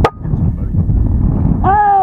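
A single sharp air rifle shot right at the start, followed by wind buffeting the microphone. Near the end a man lets out a long, falling 'oh' at the hit.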